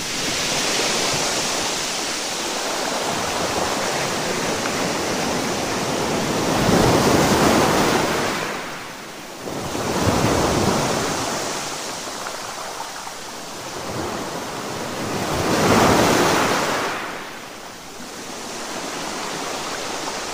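Ocean surf breaking against a seawall and washing over the promenade: a steady rush of water that swells into loud crashes several times, strongest about seven, ten and sixteen seconds in.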